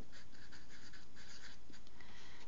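Felt-tip marker writing on paper: a quick series of short, light scratching strokes as a word is written.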